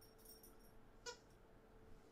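Near silence, broken by one faint, short squeak about a second in, from a dog's rubber squeak toy.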